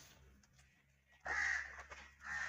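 A single short, harsh animal call of about half a second, a little past the middle, after a quiet start.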